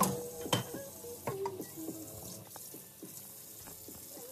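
Dishwashing at a kitchen sink: water from the faucet splashing as a glass is rinsed, with dishes and utensils clinking sharply near the start and about half a second in.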